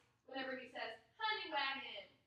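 A woman's voice speaking two drawn-out words, counting the dance steps aloud.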